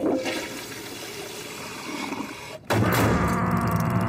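Toilet flushing behind a closed door, a rushing of water that cuts off abruptly about two and a half seconds in; a louder pitched sound, likely the soundtrack's music, takes over at once.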